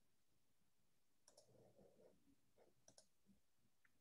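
Near silence with a few faint clicks: two quick pairs about a second and a half apart.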